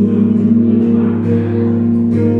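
Live guitar playing, with chords held and left ringing.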